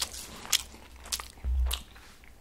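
A person chewing a mouthful of burger, with sharp clicks about every half second and a dull bump about halfway through.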